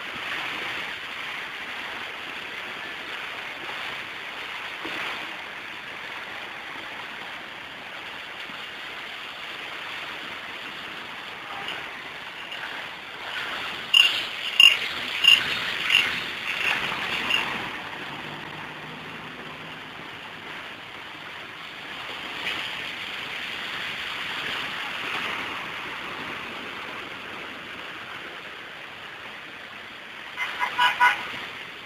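Muddy flash-flood water running fast through a street, a steady rushing noise. About fourteen seconds in, a run of six short, sharp, loud sounds comes over some three seconds.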